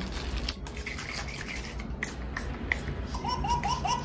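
Plastic packaging crinkling and rustling as it is cut open with scissors, with a few sharp clicks. Near the end a quick run of short, repeated high-pitched notes comes in.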